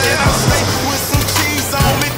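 Hip hop music: deep bass drum hits that drop in pitch, over a held bass note.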